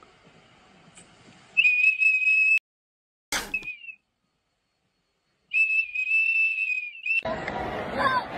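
A golden retriever blowing a plastic whistle held in its mouth: two steady, shrill toots, each about a second long, with a sharp click and a short peep between them. Near the end, crowd chatter starts.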